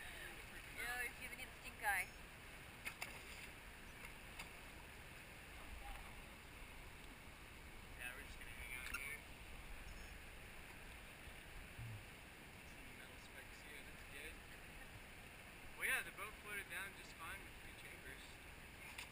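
Faint, steady sound of calm river water around a raft, with distant indistinct voices now and then.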